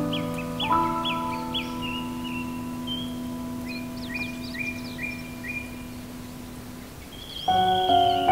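Soft solo piano holding chords that slowly die away, over a nature recording of songbirds chirping and whistling in short repeated phrases. The piano thins out almost to nothing, then a new chord is struck loudly about seven seconds in.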